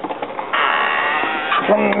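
Sliding screen door rolling open along its metal track, a scraping, rumbling run of about a second.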